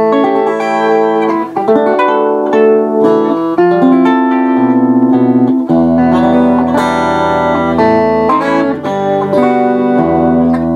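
Standard-tuned Veillette Swift electric 12-string guitar, played on its bridge Seymour Duncan vintage rail pickup with the tone full up: picked chords and melody notes ring out with the doubled strings, with a stretch of fast repeated picking about halfway through.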